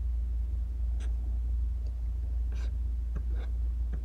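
A steady low hum, with a few faint soft clicks about one, two and a half and three and a quarter seconds in.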